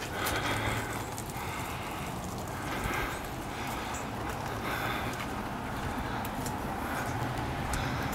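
Footsteps on a wet paved driveway, about one step a second, over a steady outdoor hiss with scattered faint ticks.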